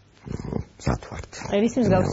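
Speech: a person talking in an animated voice, the pitch sliding up and down near the end.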